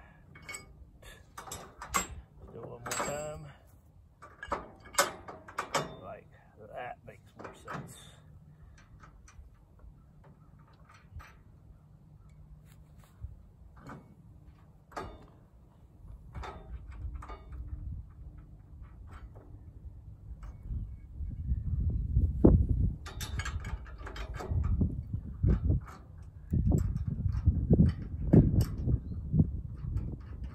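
Metal clinks and taps as bolts, nuts and a U-bolt are fitted by hand onto the steel frame of a squeeze chute, busiest in the first several seconds. From about two-thirds in, an uneven low rumble becomes the loudest sound.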